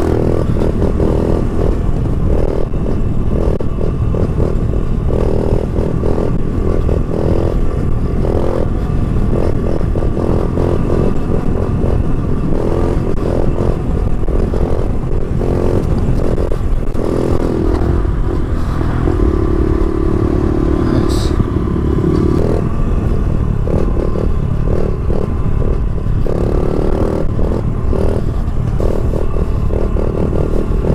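Honda CRF70 pit bike's small four-stroke single-cylinder engine running under throttle while the bike is ridden in a wheelie. Its pitch keeps rising and falling with throttle, and it holds steady for a few seconds past the middle. Low wind rumble on the microphone runs underneath.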